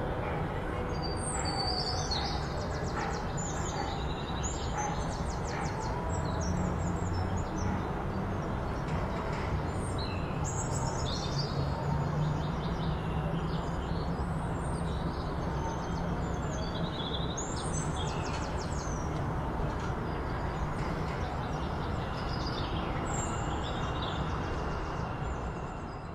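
Small birds chirping and trilling over a steady background of low environmental noise, fading out at the very end.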